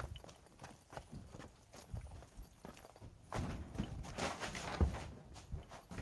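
Footsteps and handling noise from someone walking with a handheld camera: irregular knocks and scuffs, denser and louder for about two seconds from around three seconds in.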